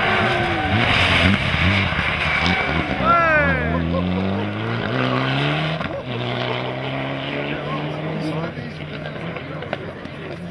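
Mitsubishi Lancer Evolution rally car's turbocharged four-cylinder engine accelerating hard out of a corner. Its pitch climbs and drops in steps through several upshifts as it pulls away, fading toward the end.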